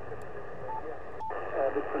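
Yaesu FT-710 receiving 40-metre single-sideband from its speaker: a steady hiss of band noise with a weak voice in it. Two short beeps come about two-thirds of a second apart in the middle.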